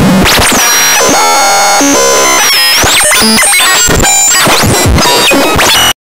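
Loud electronic music with synthesizer sweeps gliding up and down over a dense noisy layer, cutting off suddenly near the end.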